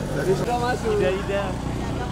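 Indistinct speech over a steady low hum; the hum stops about half a second in.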